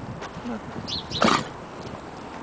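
A congested boxer's nose and breath noises close by: faint sniffs, then one loud, short snort about a second and a quarter in. The dog is congested and coughy from a respiratory illness.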